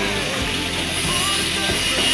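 Electric angle grinder running with a steady high whine as it cuts into a scrap wooden board, notching it to make a serrated mortar spreader.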